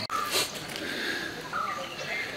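Birds chirping in short, scattered calls, with a brief louder sound about half a second in.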